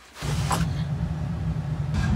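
A steady low rumble begins about a quarter second in and holds, with faint hiss above it.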